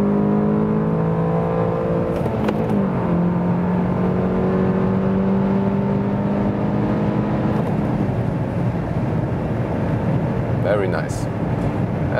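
Volkswagen Golf GTI Clubsport's 2.0-litre turbocharged four-cylinder, heard from inside the cabin under hard acceleration from third gear. The engine note rises, drops with a short click at an upshift about two and a half seconds in, and climbs again in the next gear until the throttle eases around eight seconds in, leaving wind and road noise.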